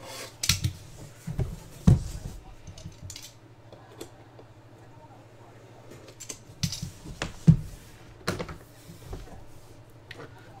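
A hard plastic Panini Flawless card briefcase being handled and opened: a scattering of sharp clicks and knocks, loudest about two seconds in and again about seven and a half seconds in.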